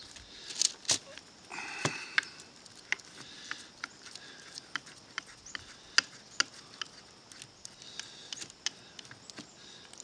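Hand screwdriver backing a wood screw out of two clamped-together wooden boards: a run of irregular sharp clicks and small creaks as the screw turns, with a brief squeak about one and a half seconds in.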